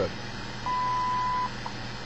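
WWV time signal on 25 MHz through a shortwave radio's speaker: the 1000 Hz minute-marker tone sounds for just under a second, starting about two-thirds of a second in, followed by a single seconds tick. Steady static runs underneath, since the signal is weak and near the noise floor.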